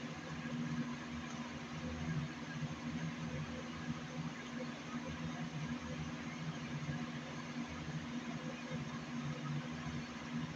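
Steady low hum with an even hiss over it: constant background room noise, with no distinct events.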